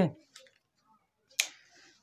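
A single sharp click about one and a half seconds in, followed by a short soft hiss, in a pause between a man's spoken words.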